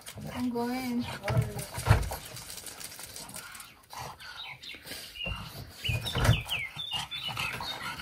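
Quiet courtyard mix: a short voice-like sound in the first second, then small birds chirping in short high notes twice around the middle, with a few dull thumps in between.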